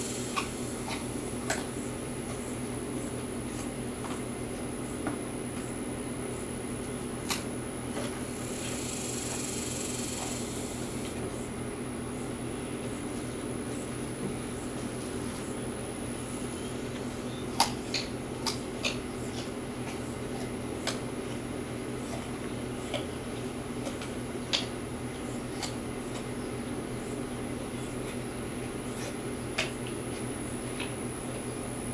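Steady mechanical hum with a thin high tone above it, and scattered short crunches and clicks as a white-tailed deer chews carrots taken from the hand.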